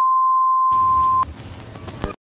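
A steady, loud test-tone beep of the kind played with TV colour bars, cut off about a second and a quarter in, followed by a quieter static hiss that runs on to the end.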